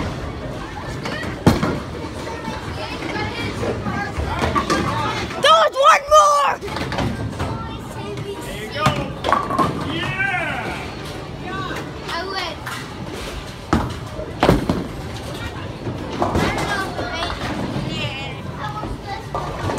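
Bowling alley noise: children's voices and chatter with a few sharp knocks.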